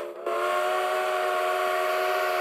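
A multi-note chime steam whistle blowing one steady chord. It breaks off right at the start, then sounds again about a quarter second in as one long, even blast.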